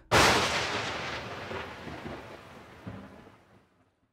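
Trailer sound-effect hit: a single sudden loud boom that starts just after the speech stops, then dies away slowly and is gone by about three and a half seconds in.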